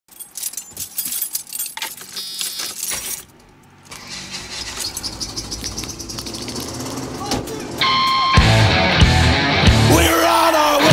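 Sharp clicks and rattles, a short pause, then quick regular clicking. About eight seconds in, a loud punk rock band comes in.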